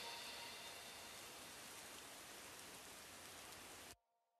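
Faint, steady rain-like noise left as the background ambience of a lofi track after its music has faded. It cuts off suddenly near the end.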